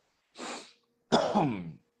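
A man coughs about a second in, a short voiced cough that falls in pitch, after a brief breath.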